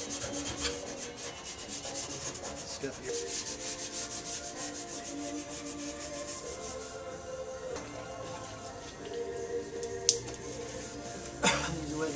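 A worn Scotch-Brite abrasive pad scuffed by hand around the edges of a primed car fender in quick back-and-forth rubbing strokes, keying the surface for paint. The strokes are steady for about seven seconds and then thin out, with a sharp click near the end.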